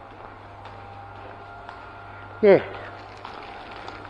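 Steady low background hum with a few faint ticks. A man says one short "yeah" about two and a half seconds in.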